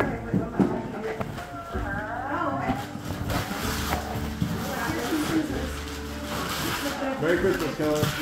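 Indistinct voices talking in a room, with faint music in the background.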